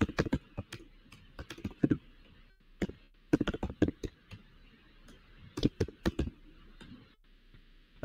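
Typing on a computer keyboard: irregular keystrokes in short runs with pauses between them.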